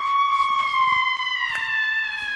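A single long, high-pitched whistle-like tone that slides slowly down in pitch.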